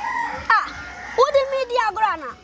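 A boy wailing as he cries: a short cry about half a second in, then a longer drawn-out wail that rises, holds and falls away near the end.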